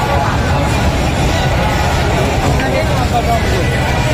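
Loud fairground din: many people's voices over a steady low rumble.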